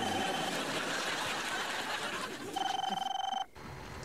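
Telephone ringing: two ring bursts about two seconds apart, each about a second long with a fast warble. The second ring cuts off short.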